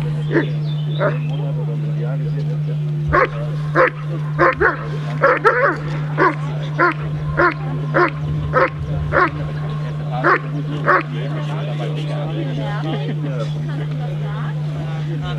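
German Shepherd dog barking at a protection helper while guarding him, a run of about thirteen short, sharp barks at roughly one and a half a second that starts about three seconds in and stops about eleven seconds in. A steady low hum runs underneath.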